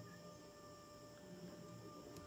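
Near silence: room tone with a faint steady whine.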